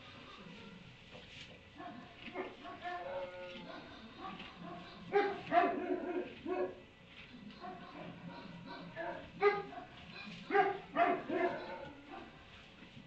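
Animal calls: a run of short, pitched yelps or barks in two clusters, one around the middle and one near the end, over a low steady background.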